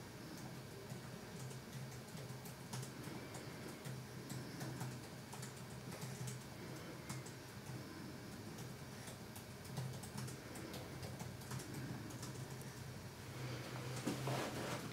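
Faint, irregular light clicks and taps, several a second, over a low steady hum.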